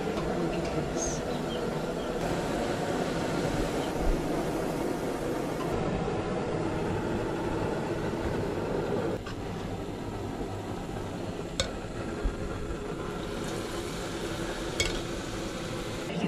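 Sel roti dough frying in a pan of hot oil: a steady sizzle that drops a little about nine seconds in, with a few light clinks of the cooking stick and utensils.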